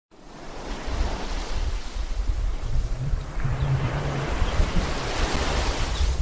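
Rushing noise of ocean surf and wind, fading in over the first second and building toward the end, over a low rumble.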